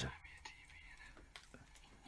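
Near silence in a gap between speech: a faint, barely audible voice over a low steady hum.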